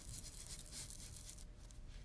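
Foam pad of an ink blending tool being rubbed over card: a faint, scratchy scrubbing that eases off about one and a half seconds in.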